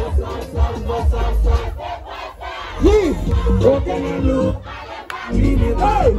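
Loud live music over a club sound system with a heavy bass beat, and a crowd shouting along; voices glide up and down over the music. The bass eases off briefly twice before coming back in.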